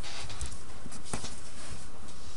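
Three short, light clicks, about half a second in and twice around a second in, over a steady background hiss.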